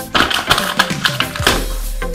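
A paper brochure being flapped and rustled, a quick run of crisp paper rustles that stops about a second and a half in, over background music.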